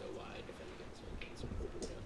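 Faint, distant speech from a student in a lecture room, over a low room rumble.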